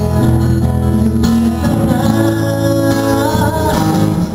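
Acoustic guitar played with a man singing along, in a live solo performance.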